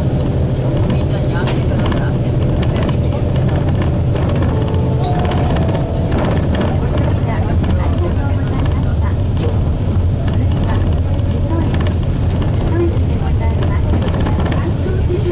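Nissan Diesel KC-RM bus under way, heard from inside the passenger cabin: its 6.9-litre FE6E six-cylinder diesel gives a steady low drone, with road noise.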